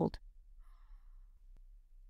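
A woman's speech ends at the start, then a pause holding a faint, brief sigh and a single soft click.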